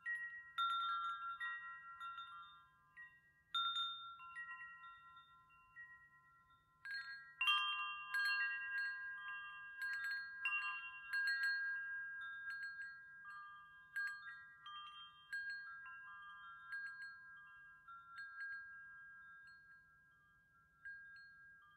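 Chimes ringing: irregular, bell-like struck tones that overlap and ring on, several at once in places, loudest about seven to eight seconds in.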